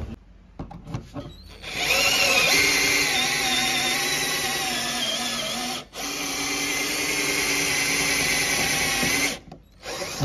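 Cordless drill running, undoing the screws of a car's front number plate: a steady motor whine that runs for about seven seconds, with a short break about six seconds in. A few light clicks come before it starts.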